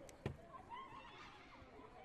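A single sharp thud as a kick lands on a taekwondo body protector, followed by high-pitched, wavering shouts.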